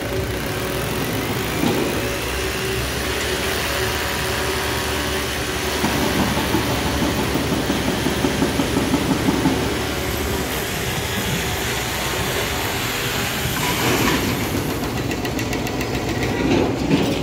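Diesel engine of a SANY long-reach demolition excavator running steadily, with a stretch of rapid rattling and clattering about six to ten seconds in.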